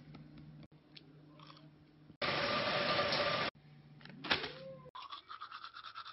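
Short cut-together clips: faint scratching of a pencil on paper, then about a second and a half of loud, steady rushing noise, a brief sharp sound, and near the end a toothbrush scrubbing teeth in rapid strokes.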